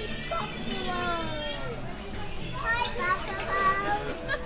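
Young children's high-pitched voices squealing and vocalizing without words, one long falling squeal about a second in and more squeals near the end, over table chatter.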